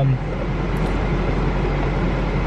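Steady low hum with an even rushing noise inside a car cabin.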